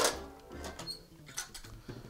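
A kitchen knife finishes cutting through a lemon and strikes the wooden cutting board with one sharp knock right at the start, which fades quickly. Soft background music runs under it, with a faint click near the middle.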